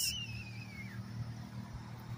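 Quiet outdoor background: a low, steady hum of distant traffic, with a thin whistle that falls in pitch during the first second.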